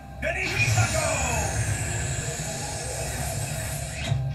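Anime soundtrack: a dramatic music cue with a magical sound effect, a high shimmering tone that starts suddenly and slides slowly downward over a low steady drone.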